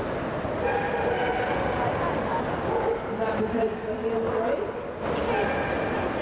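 A dog whining in long, drawn-out high tones, three times, over the steady murmur of a large indoor hall.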